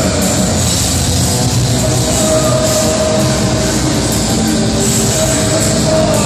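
Black metal band playing live: dense distorted electric guitars with drums and cymbals at a steady, unbroken level, recorded from the audience.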